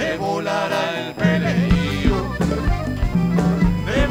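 A Uruguayan canto popular folk group playing a song live, with singing over a steady beat. The bass and beat drop out briefly near the start and come back about a second in.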